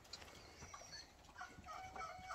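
Near silence, with a few faint, short pitched animal calls in the background.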